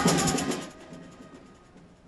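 Samba school bateria playing: surdo drums under a fast, dense rattle of chocalho shakers, fading out within the first second to quiet.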